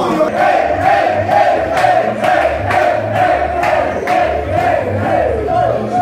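A group of young men chanting a victory song together in unison, with a steady beat of claps and stamping feet about twice a second.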